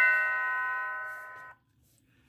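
A wired warehouse doorbell chime rings the lower second note of a ding-dong. The note fades, then cuts off suddenly about one and a half seconds in, when the magnetic door switch closes and resets the chime.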